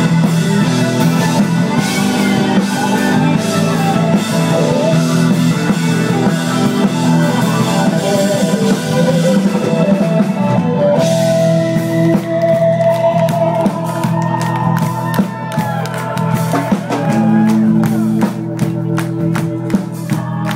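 A live band playing an instrumental passage, with electric guitars over a drum kit. Drum hits grow denser near the end.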